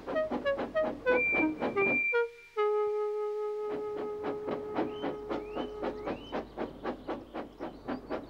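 Steam locomotive puffing sound effect, a quick steady run of chuffs about four to five a second, under orchestral incidental music. The music plays a few stepping notes first, then a long held note. There is a brief drop in sound just after two seconds.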